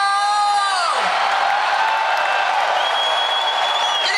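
Large concert crowd cheering and whooping, led by one long, high held whoop that falls away after about a second.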